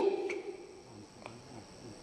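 A pause in a man's speech: his voice trails off at the start, then faint room tone with a steady high hiss.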